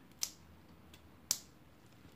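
Two short, sharp clicks about a second apart: scissors snipping damaged Paphiopedilum orchid roots.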